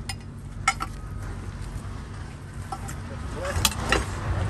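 Steady low engine hum, with three sharp metallic clicks: one at the start, one less than a second in, and one near the end.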